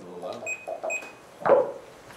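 Indistinct talking among people in a meeting room, one voice louder about one and a half seconds in, with two short high electronic beeps in the first second.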